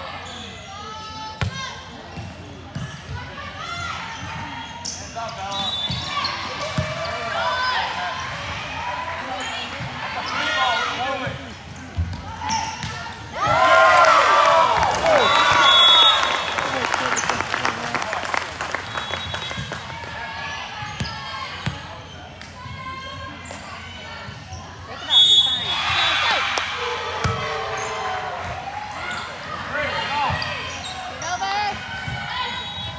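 Indoor volleyball rally: the ball is hit and bounces on the court amid shouting from players and spectators, with a loud burst of cheering about halfway through as the point is won. Short referee whistle blasts sound several times.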